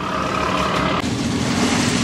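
An engine running steadily with a constant hum. A higher tone in it drops away about halfway through while a lower drone carries on.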